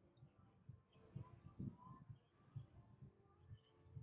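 Near silence, with only faint low thuds now and then.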